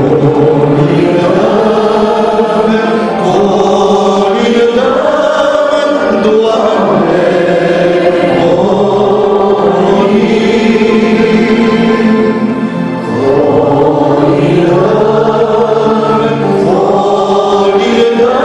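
Male voices singing a Romanian Christmas carol (colindă) in long, sustained phrases, with a short break about thirteen seconds in.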